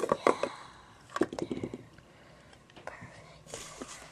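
Two short bursts of quiet, whispered voice, with a few faint handling clicks.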